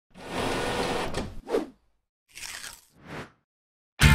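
Crackly tearing sounds, as of a sheet being ripped: one long rip lasting over a second and a short one right after, then two short rips after a pause.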